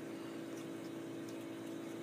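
Steady low hum of room tone, with a few faint light clicks as the metal retaining clips on the back of a wooden picture frame are lifted.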